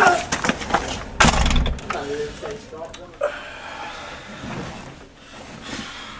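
A voice cuts off at the start, a single sharp bang comes about a second in, and brief wordless vocal sounds follow before the sound fades away.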